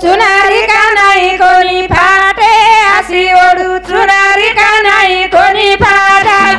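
Female vocals singing a Banjara wedding song without drum accompaniment, in high sustained phrases that break every half second or so.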